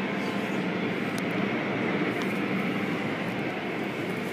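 Automatic car wash: spinning blue cloth brushes and water spray working over the car's windshield, heard from inside the car as a steady rushing noise.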